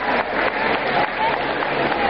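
Audience applauding, with voices mixed into the clapping.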